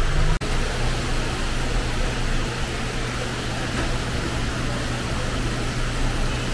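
Steady background hum and hiss with no distinct event, briefly cutting out about half a second in.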